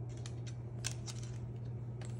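Cockatoo's claws clicking on a hardwood floor as it steps: a handful of sharp clicks, the loudest a little under a second in, over a steady low hum.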